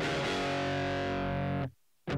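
A single distorted electric guitar chord is struck and left ringing in a rock song intro. It cuts off abruptly just before the end.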